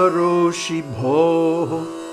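A man chanting the closing words of a Sanskrit verse in a melodic, drawn-out recitation over a steady instrumental drone. The chanting stops near the end, and the drone carries on alone.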